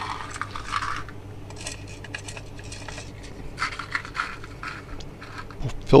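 Small plastic bearing balls for a mainsheet traveler car poured from a paper cup into the slots of a 3D-printed ball loader, clicking and rattling against each other and the plastic in three short bursts.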